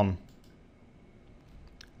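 Near silence with a faint computer-mouse click near the end, the click that starts the screen recorder.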